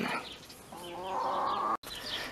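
A hen gives one drawn-out call about a second long, which cuts off abruptly near the end.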